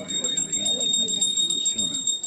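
People talking indistinctly, over a steady high-pitched whine.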